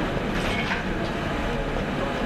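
Steady rumbling background noise of a large hall with people in it, with a few faint brief clicks.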